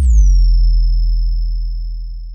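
Synthesized logo-reveal sound effect: a deep bass boom that slowly fades, with a high whistling tone that drops quickly in pitch and then holds steady.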